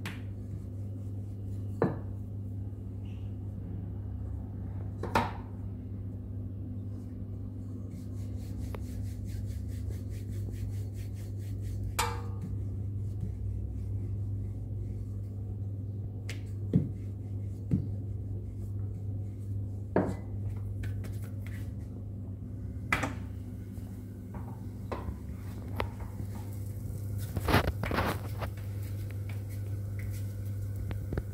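Wooden rolling pin working a stuffed paratha on a marble rolling board, with scattered sharp knocks of wood on stone, over a steady low hum.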